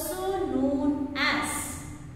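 A woman's voice reading aloud from a textbook, with a short pause near the end.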